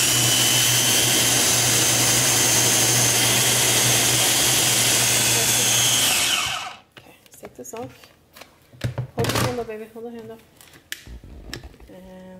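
Electric food processor running steadily with a faint high whine as it blends thick, gelled homemade dishwasher detergent smooth, then shutting off about six and a half seconds in. A few handling clicks follow.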